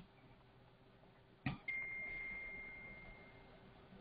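A single high electronic alert chime, struck sharply about a second and a half in and ringing on one steady pitch as it fades over about two seconds. It sounds as the five-minute binary contracts roll over to a new period.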